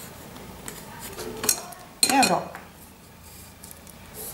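A small ruler clicking and clattering against paper and the tabletop as it is handled and set aside, with the loudest clatter about two seconds in.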